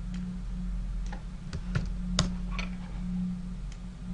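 Irregular clicking of computer keyboard keys, about seven clicks, the loudest about two seconds in, over a steady low hum.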